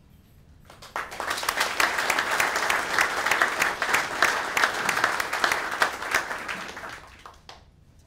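Audience applauding with many hands clapping. It starts about a second in, holds steady, and dies away near the end.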